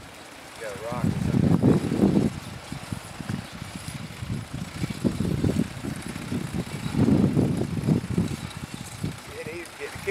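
Horse-drawn, ground-driven sickle bar mower cutting hay behind a mule team: the cutter bar's knife clatters in a fast, continuous chatter that swells and eases as the team pulls it along.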